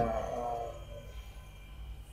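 A woman's voice from an anime clip, drawing out its last word and fading away within the first second, followed by a faint low hum.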